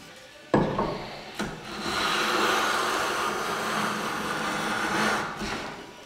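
A knock about half a second in, then one long, steady stroke of a No. 7 jointer plane, about three seconds long, along the edge of a wooden cabinet door, its iron shaving the edge.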